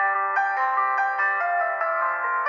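Calm, slow piano music: a gentle melody of single notes struck about every half second, mostly in the middle and upper range with no deep bass.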